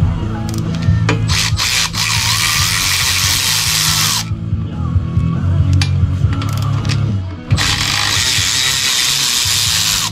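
Background rock music with a steady beat, over which a cordless power ratchet runs twice, for about two seconds each time, once about two seconds in and again near the end, backing out the engine cover screws, with a few short clicks between the runs.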